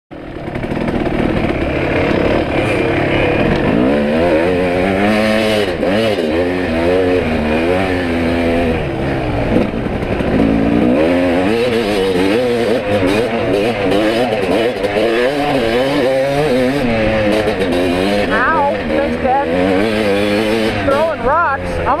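Dirt bike engine running close by, its pitch rising and falling over and over as the throttle opens and closes on a trail ride.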